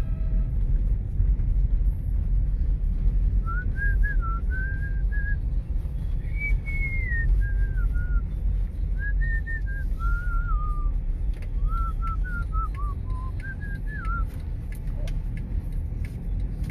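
A person whistling a short, wavering tune in phrases for about ten seconds, starting a few seconds in. Under it runs the steady low rumble of a car driving in traffic, heard from inside the cabin.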